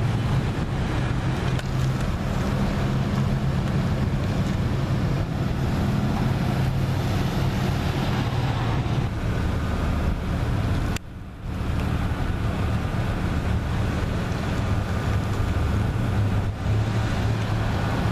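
Steady low outdoor rumble of wind on the microphone with vehicle noise underneath. It drops out briefly about eleven seconds in.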